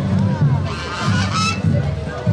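A flock of domestic geese honking, with a dense cluster of loud honks around the middle, over background music with a steady low beat.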